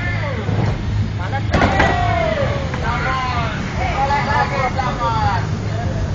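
A person's voice, with pitch rising and falling, over a steady low vehicle rumble. There is one sharp knock about one and a half seconds in.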